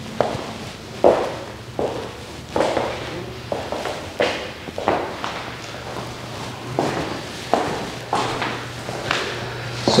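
Footsteps of sneakers on a hard floor in empty, bare rooms, at a steady walking pace of a bit more than one step a second, each step knocking with a short echo. A faint low hum runs underneath.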